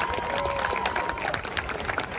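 Crowd applauding and cheering, with a few voices calling out over the clapping.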